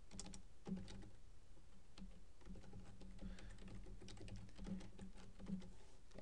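Typing on a computer keyboard: a run of faint, irregular key clicks as an address is entered, over a low steady hum.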